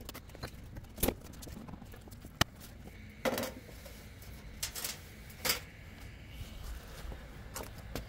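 Scattered knocks and scrapes of wooden and metal beehive covers being lifted off and set down, about six separate strokes, the sharpest a click about two and a half seconds in.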